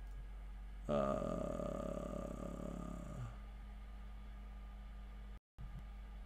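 A man's voice: a drawn-out, hesitant "do... uhh" lasting about two seconds, then only a low, steady electrical hum, broken by a brief dropout near the end.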